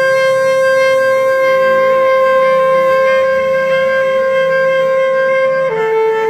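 Saxophone holding one long sustained note, processed live through electronics, over a shifting electronic backing; near the end the note steps down a little.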